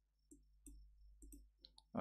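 About six faint, short clicks of a computer mouse, spread unevenly over two seconds, over a low steady hum.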